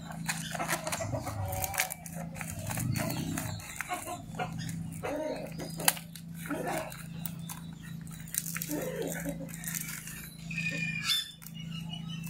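Banana leaves crackling and rustling as they are handled and folded to wrap tamales, over a steady low hum. A few short pitched calls sound in the background.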